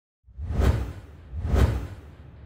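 Two whoosh sound effects with a deep bass rumble under them, about a second apart, each swelling up and falling away, the second trailing off: the sound design of a logo intro animation.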